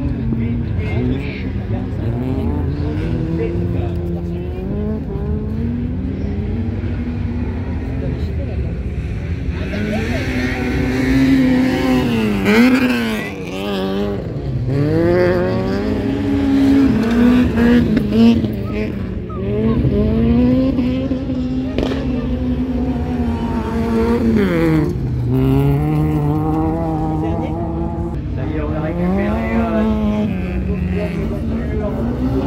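Race car engines on a dirt track revving hard, their pitch climbing and dropping again and again as the cars accelerate and lift off through the corners. The engines are loudest through the middle stretch.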